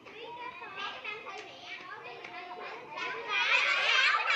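A crowd of schoolchildren chattering and calling out all at once, many high voices overlapping; the hubbub swells louder near the end.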